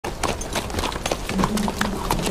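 Several horses walking, their hooves clip-clopping in an uneven patter on a dirt track. A low held musical note comes in about two-thirds of the way through.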